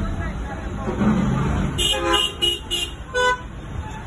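Vehicle horn in street traffic: four quick toots in a row about two seconds in, followed by one more toot at a different pitch, over a steady rumble of engines.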